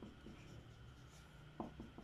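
Felt-tip marker writing a word on paper, faint strokes of the tip against the sheet.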